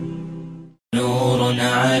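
A background vocal drone fades out and stops just under a second in. After a brief silence, an Arabic nasheed begins: sung voices over a steady low hum.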